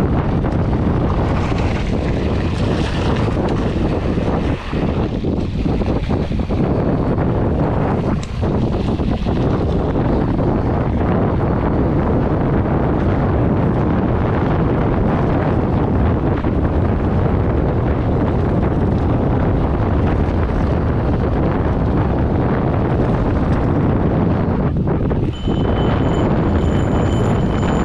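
Steady rush of wind on a camera microphone as a mountain bike rides fast along a gravel road, mixed with the rumble of the tyres on the gravel. The noise dips briefly three times.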